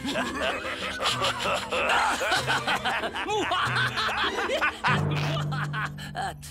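Cartoon villains' gloating laughter, a long run of short rising-and-falling laughs, over background music with low held bass notes.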